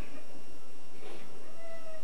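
A pause in the talk: steady background hiss with two faint, short, high pitched sounds, one at the start and one near the end.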